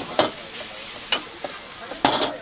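Rice noodles sizzling in a hot wok as a metal spatula stirs and tosses them, with a sharp clank of the spatula against the wok about a fifth of a second in and another just past one second.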